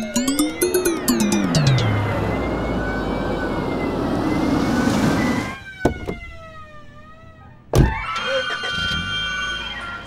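Background music with comic sound effects, including a pitch glide that rises and then falls in the first two seconds, over a police jeep driving up. A sharp bang comes near the end.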